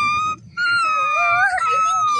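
A person's voice making high-pitched puppy-like whimpers for a toy puppy: one short steady whine, then a longer one about half a second in, with a lower wavering whine alongside it.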